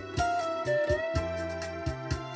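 Electric guitar playing a held lead melody that bends up in pitch about a second in, over a steady beat and bass line.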